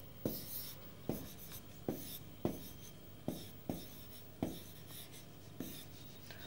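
Handwriting on a board: about eight short, quick pen strokes, spaced unevenly.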